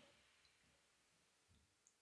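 Near silence: faint hiss with a few tiny ticks and soft bumps.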